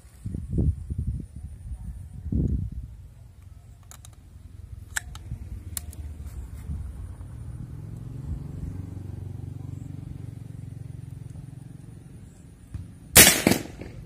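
A Thunder PCP air rifle fires a single sharp shot near the end, at a power setting just raised by half a step. Before it, low rumbles and a droning hum rise and fade, with a couple of light clicks.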